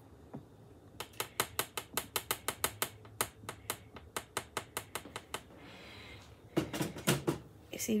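A wooden spoon filled with wet brown slick paint tapped rapidly against the work surface, about five quick taps a second for some four seconds, then a few more taps near the end; the tapping settles and smooths the paint in the spoon's bowl.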